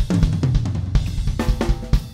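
A drum kit being played: bass drum, snare and cymbal strokes in a steady groove. The snare is a Yamaha Recording Custom 14"x6.5" aluminum snare drum.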